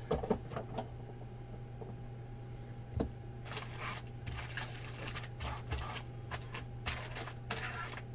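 A stack of freshly unpacked trading cards being handled in the hand, the cards sliding and rustling against each other in short spells, with a single sharp click about three seconds in.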